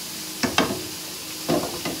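Roe deer meat sizzling steadily as it browns in olive oil in frying pans, with a few short knocks about half a second in and again near the end.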